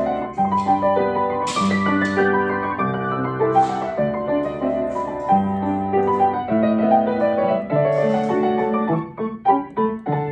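Background piano music, a gentle melody of changing notes.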